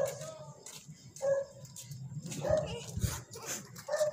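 A dog barking and yipping in short separate calls, about one a second, with children's voices.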